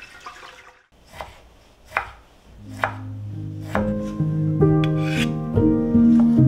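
Kitchen knife slicing cucumber on a cutting board: about five separate cutting strokes, roughly one a second, starting about a second in. Soft background music comes in partway through.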